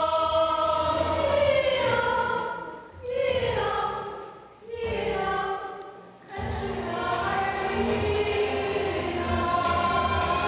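Mixed choir of men's and women's voices singing a Chinese choral song, with long held notes; the sound dips briefly between phrases about three, five and six seconds in, then the full choir comes back.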